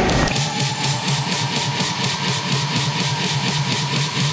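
Electronic dance music in a build-up. The bass cuts out a moment in, leaving a steady beat under a slowly rising synth sweep.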